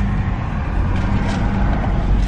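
Car running on the road, heard from inside the cabin: a steady low rumble of engine and tyres.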